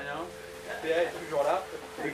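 A person's voice saying a few short words.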